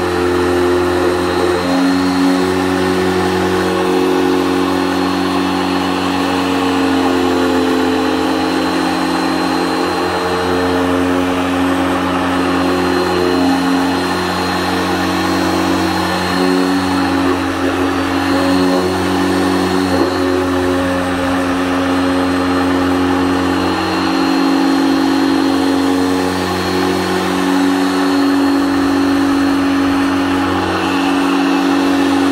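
Harbor Freight dual-action polisher running continuously with a four-inch foam pad, compounding scratches out of a coated car fender. Its motor hum steps up and down in pitch every second or two as the pressure on the pad changes.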